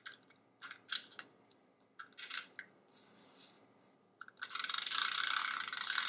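Handheld tape runner laying adhesive on paper card stock: a few short clicks and scrapes, then a longer continuous rasp of about two seconds near the end as it is drawn along the paper.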